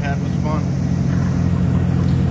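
A motor vehicle engine idling, a steady low hum, with a brief voice about half a second in.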